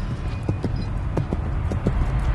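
Galloping hoofbeats, quick knocks in uneven pairs about five a second, over a low steady music bed.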